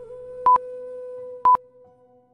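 Quiz countdown timer beeping: a short, high electronic beep once a second, two in all, over a faint steady background tone.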